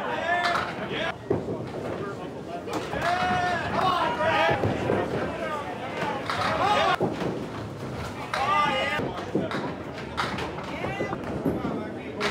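Indistinct voices talking in a bowling alley, with a few scattered knocks and thuds.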